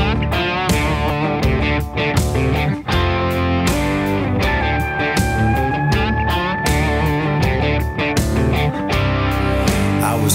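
Country band playing an instrumental intro: twangy electric guitar over bass and a steady drum beat. In the middle, a pedal steel guitar holds one long note that slides slightly up in pitch.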